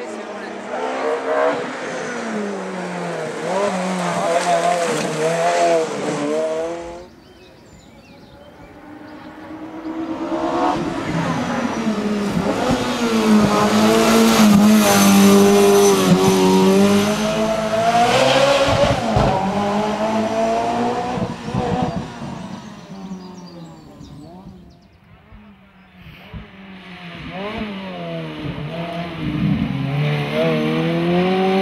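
A Ferrari F430's V8 engine revving hard up a hill-climb course, its pitch rising and dropping as it shifts gears. It comes in three passes with quieter gaps between, loudest in the middle pass.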